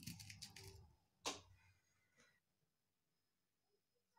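Faint handling of metal jewellery head pins picked out of a plastic compartment box, with one sharp click a little over a second in.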